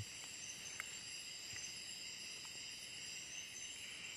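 Steady night insect chorus of crickets: several high-pitched trills running together without a break, with a few faint ticks.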